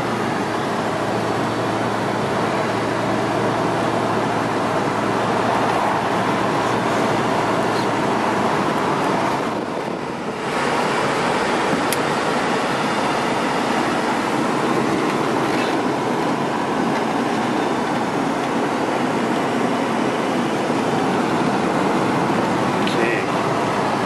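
Classic car being driven, heard from inside the cabin: steady engine, tyre and wind noise that dips briefly about ten seconds in, with no squeaks or rattles from the body.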